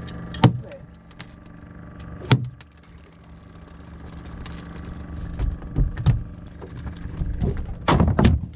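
A boat's engine running with a steady hum, under sharp knocks as a hooked horse mackerel is swung aboard: one about half a second in and a louder one about two and a half seconds in. In the last few seconds, a quick run of thumps and knocks as fish flap and slap on the boat's deck.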